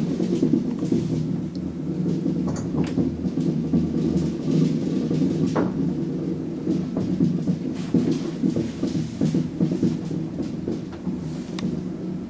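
ASEA Graham traction elevator running with riders in the car: a steady low hum and rumble, with a few sharp clicks.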